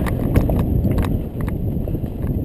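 Mountain bike rattling down rocky singletrack: irregular clicks and knocks from the bike jolting over stones, over a heavy low rumble of wind buffeting the camera microphone.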